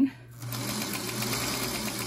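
Singer Featherweight sewing machine starting up about half a second in, then running at a steady speed as it stitches fabric and interfacing along a marked line.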